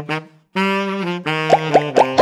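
Dance-track breakdown led by a saxophone-like horn riff in held notes. The riff breaks off briefly just after the start, then comes back, with a few short upward swoops near the end.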